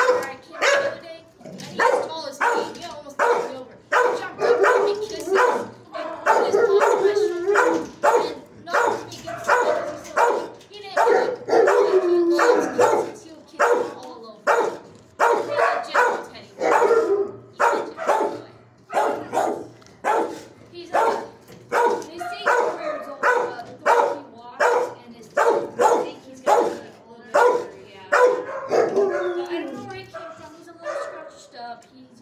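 Shelter dogs barking over and over, about one or two barks a second without a break, with a few longer, drawn-out calls that fall in pitch.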